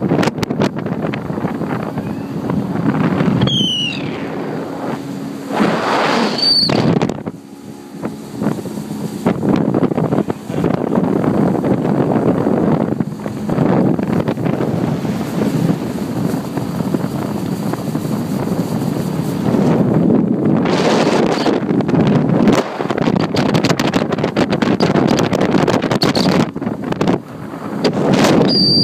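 Wind buffeting the microphone on a moving speedboat, over the rush of the boat's motor and water. Two brief high-pitched squeals sound a few seconds in, and the noise eases for a moment about a third of the way through.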